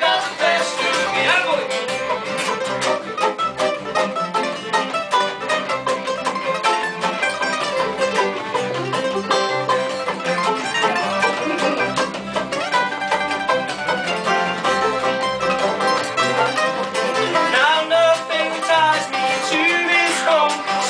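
Acoustic folk string band playing live: banjo, mandolin and guitar picking over fiddle and double bass in a mostly instrumental passage, with a voice singing briefly at the start and coming back in near the end.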